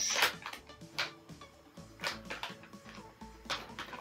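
Plastic snack packet crinkling in a few short bursts as it is handled, with faint background music under it.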